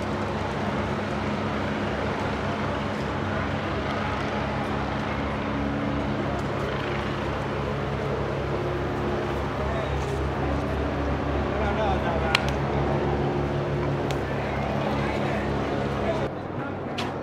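A steady low engine drone, with voices and shouting over it. One sharp crack about twelve seconds in.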